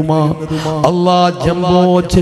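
A man's voice through a public-address microphone, delivering a religious sermon in a drawn-out, chant-like intonation with long held pitches.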